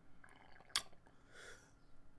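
Quiet room tone with a single sharp click a little under a second in, followed by a soft mouth noise.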